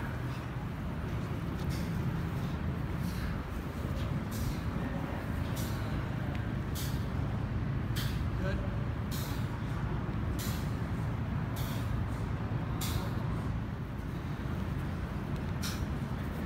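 Short scuffing swishes, roughly one a second, as the athletes' legs and shoes brush the artificial turf during the kicking drill. Under them runs the steady low hum of a large floor fan.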